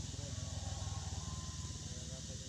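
Low, steady rumble of a small engine running, with a fast even pulse, slightly louder in the middle.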